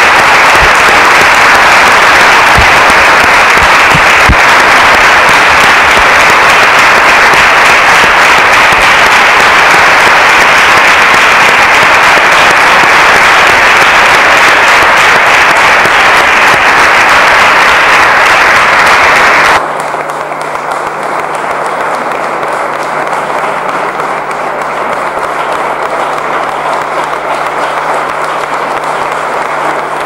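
Sustained applause from a roomful of people clapping. About two-thirds of the way through it cuts abruptly to quieter applause with a low steady hum underneath.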